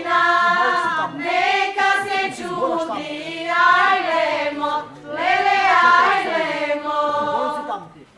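A group of women singing a Macedonian folk song in unison, unaccompanied, in several long, held phrases with short breaths between them.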